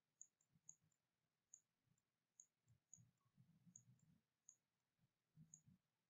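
Near silence, with about nine very faint, irregularly spaced ticks.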